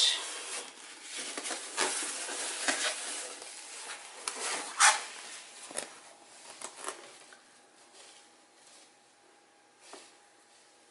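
Rubber balloon handled in a gloved hand and pressed onto wet acrylic paint on a canvas: rustling, rubbing handling noise with several sharp clicks, the loudest about five seconds in. The noise dies down after about seven seconds.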